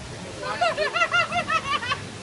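High-pitched laughter: a quick run of short 'ha' notes, about six a second, starting about half a second in.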